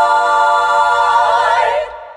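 A treble (SSA) choir holding a sustained chord, the voices wavering with vibrato about a second in, then releasing together near the end and leaving a short reverberant fade.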